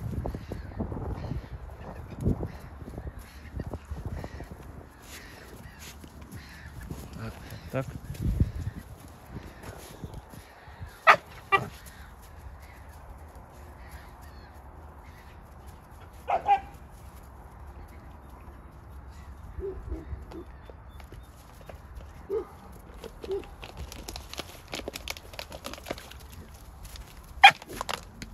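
A few short, sharp animal calls spread over the stretch, the two loudest about eleven and sixteen seconds in, with fainter ones later.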